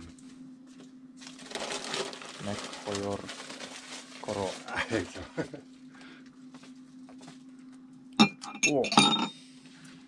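Voices murmuring without clear words over a steady low hum, with a rushing, breathy noise between about one and four seconds in. A sharp clink of a metal drinking bowl comes about eight seconds in, the loudest sound here.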